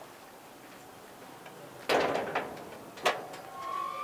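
A sheet-metal gate clattering as it is pushed, about two seconds in, followed a second later by a sharp knock and a brief squeak near the end.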